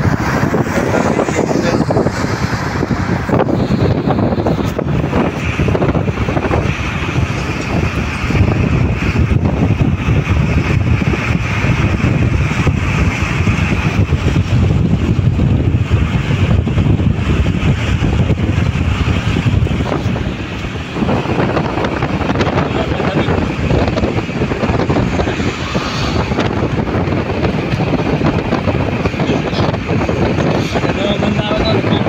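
Road and wind noise in a car travelling at motorway speed: a steady rush of tyres on tarmac, with wind buffeting the microphone and a brief lull about two-thirds of the way through.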